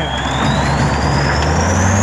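Heavy vehicle engine running under load, its low rumble building near the end, with a high whine that rises steadily in pitch, as the overturned tanker is being lifted.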